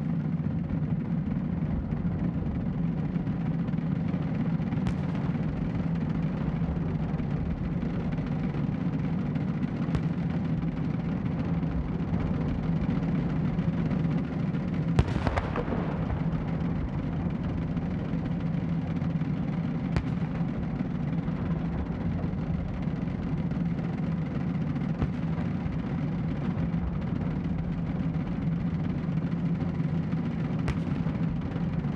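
Ceremonial gun salute from towed howitzers: single sharp cannon reports about every five seconds, the one near the middle the loudest, over a steady low hum.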